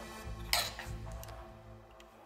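Soft background music, with one short clatter about half a second in as a hand tool is picked up off the workbench, followed by a few faint ticks.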